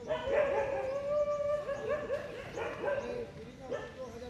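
A dog howling: one long held note, then several shorter calls that rise and fall.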